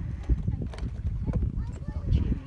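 A horse's hooves striking the ground as a few irregular hoofbeats, with low voices in the background.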